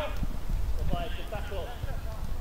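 Players shouting to each other across an outdoor football pitch, heard at a distance, loudest about a second in, over a low, uneven rumble.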